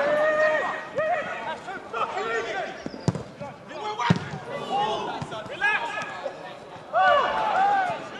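Pitch-side sound of a football match: players and spectators shouting, with the loudest calls at the start and near the end, and a football struck twice, about a second apart, near the middle.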